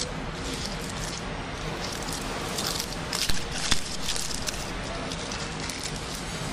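Aluminium foil crinkling as it is peeled off a steel ring mold, with a few sharper crackles in the middle, over a steady background hiss.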